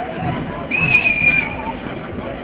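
A whistle blown once: a single high, steady note lasting under a second, over crowd babble.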